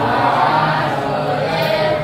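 Many voices singing together in unison, ending on a long held note.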